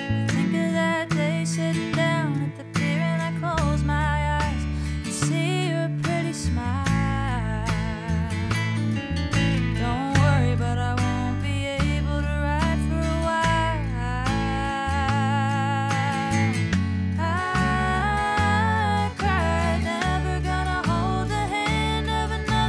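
Country band arrangement: capoed acoustic guitars strumming and picking over a bass line, with a melody line sung or played with vibrato on top.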